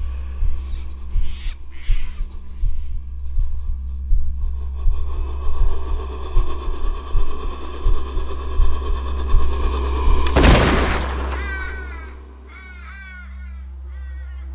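A low droning music score with soft low pulses builds for about ten seconds. A single loud rifle shot then cuts it off and fades away.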